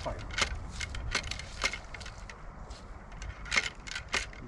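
Ramrod being driven down the barrel of a 20-gauge flintlock muzzleloading shotgun to pack the wads tight over the powder charge: a few sharp, irregularly spaced knocks as it strikes home.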